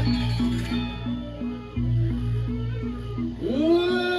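Balinese gamelan playing a repeated metallophone figure over a low, steady hum. Near the end a long wailing cry sweeps up, holds and falls away.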